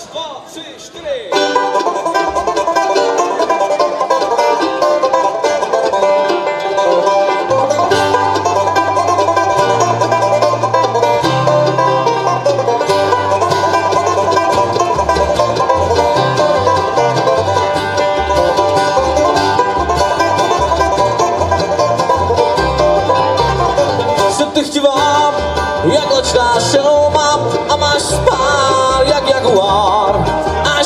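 Bluegrass band playing a fairly quick tune with no singing: banjo and acoustic guitar start about a second in. The upright bass comes in around seven seconds in and then plays an even beat.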